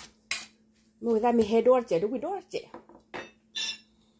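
Metal spoon clinking and scraping against a stainless steel mixing bowl while tossing a salad: a handful of separate clinks, the last one ringing briefly.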